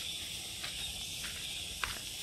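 Steady, high-pitched drone of insects, with a few faint footsteps on grass about every half second.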